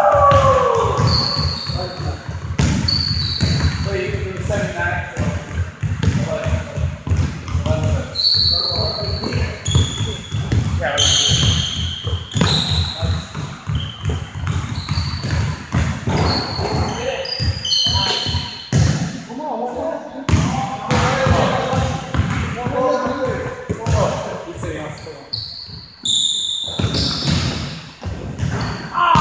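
Basketball bouncing and being dribbled on a hardwood gym floor, with rubber-soled sneakers squeaking in short high-pitched chirps as players cut and stop, and players' voices, all echoing in a large gym hall.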